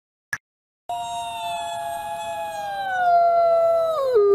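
A short click, then, about a second in, a wolf begins one long howl: a clear, pure call held steady at first, then sliding down in pitch and growing louder near the end.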